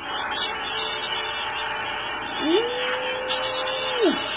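A man's voice slides up into a long, level 'ooh' through pursed lips, starting about two and a half seconds in and falling away at the end. Behind it, the film trailer's soundtrack plays from a laptop as a steady noisy rush.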